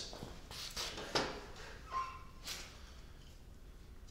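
Faint knocks and shuffling as a 2x4 board is handled and set on a miter saw station, with a brief faint squeak about two seconds in, then quiet room tone.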